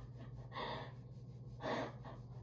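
Two faint gasping breaths, one about half a second in and one near the end, from a person overcome with emotion.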